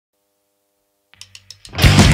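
Near silence with a faint hum, then about a second in, three quick clicks, and near the end a hardcore punk band comes in loud with distorted electric guitars, bass and drums.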